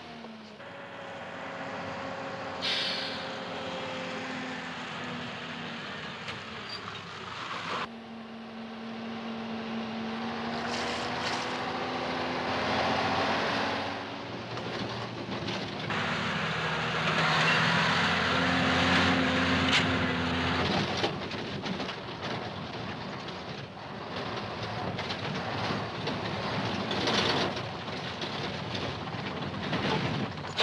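Lorry engine running as the truck drives, heard from inside the cab over a steady road rumble; its pitch rises and falls as the engine speed changes, with sudden shifts about eight, sixteen and twenty-one seconds in.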